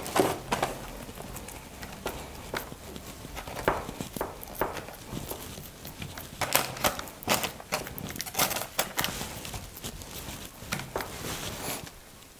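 A spoon pressing and scraping a thick, sticky mixture of nuts and candied peel level in a paper-lined cake tin: irregular soft taps and scrapes.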